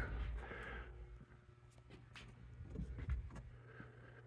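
Quiet room tone: a low steady hum with a few faint, light clicks.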